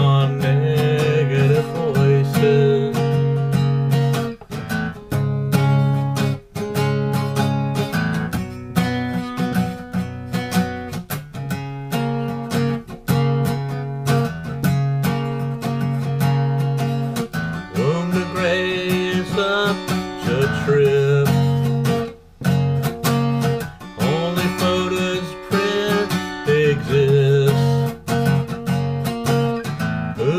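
Acoustic guitar strummed in a steady rhythm through a chord progression, as an instrumental break in a song.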